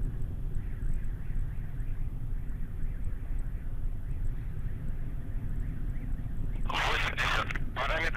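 Steady low rumble of the distant Soyuz-2.1a rocket's first- and second-stage engines in climb. Near the end, a loud hissy radio transmission from the launch-control loudspeaker cuts in.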